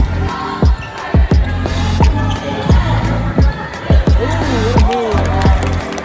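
Basketball being dribbled on a hardwood court, about two bounces a second, each with a short ringing thud. Sneaker squeaks come in around four to five seconds in.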